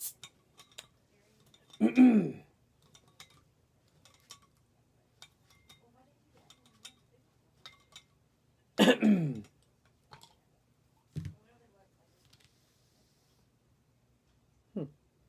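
Small scattered clicks and scrapes of a bottle opener working at the crown cap of a glass Jarritos soda bottle. A man clears his throat loudly about two seconds in, and a second loud throat sound comes near nine seconds.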